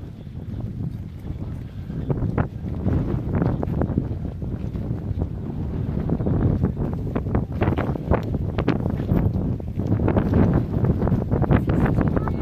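Wind buffeting the camera's microphone as a dense, rumbling roar with irregular crackling gusts, growing louder after the first couple of seconds.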